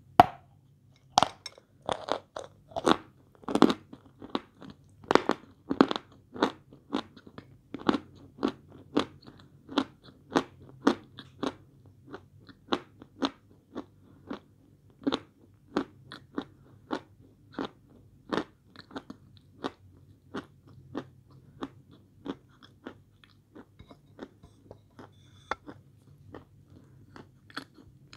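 Close-up chewing of a mouthful of hard white edible chalk, a long even run of crisp crunches about one and a half a second. They are loudest at the start and grow softer as the chalk is ground down.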